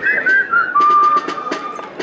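A person whistling: a few quick gliding notes, then one held note, with several sharp clicks.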